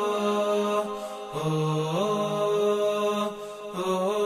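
A solo male voice chanting a melody in long held notes that step between pitches. There are short breaks for breath about a second in and near the end.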